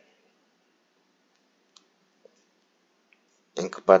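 A few faint, sparse clicks of a computer mouse scrolling a document, in an otherwise quiet room; a man's voice starts near the end.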